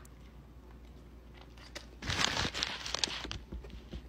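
Thin plastic fruit roll-up wrapper crinkling and tearing as it is handled and opened, a dense crackle lasting about a second and a half starting about halfway through, after a quiet start.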